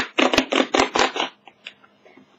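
A beauty box's outer packaging case being opened by hand: a quick run of about six rasping, rustling scrapes in the first second, then a few light clicks.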